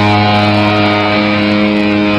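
Distorted electric guitar holding one sustained, droning note that rings on steadily through the amplifier.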